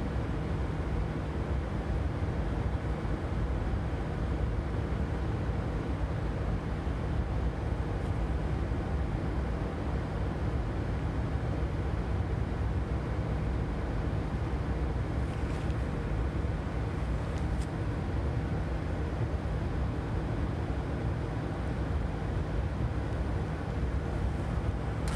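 Biological safety cabinet's blower running steadily: a constant rush of air with a low hum, with a couple of faint clicks about two-thirds of the way in.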